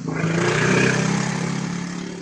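A motor vehicle's engine passing close by in the street: a steady hum with a rushing noise that swells and then fades away.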